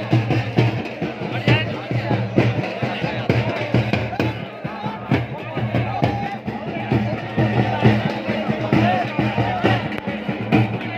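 Music with a steady drum beat and voices mixed over it.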